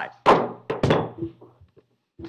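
A gavel struck twice on the dais, about half a second apart with the first strike the louder, adjourning the meeting.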